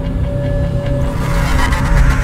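Tense background score: a low rumbling drone under one held note, swelling near the end.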